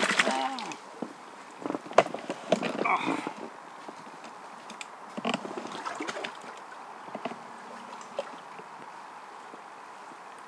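Light splashing on the water with scattered clicks and knocks around a small inflatable boat while a hooked carp is played on a rod.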